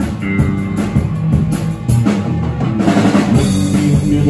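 Live rock band playing an instrumental passage between vocal lines: drum kit keeping a beat under electric guitar, bass and keyboard.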